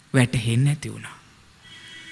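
A man's voice intoning a drawn-out phrase in a sing-song sermon delivery, its pitch gliding up and down for about a second near the start.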